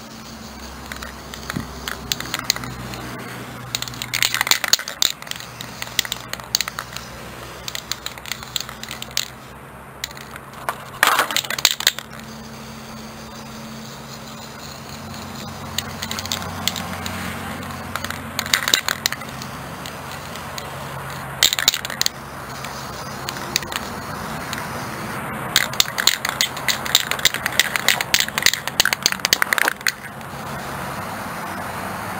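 Aerosol spray paint can spraying paint in short hissing bursts, with clusters of quick clicks and rattles from the can, over a low steady hum.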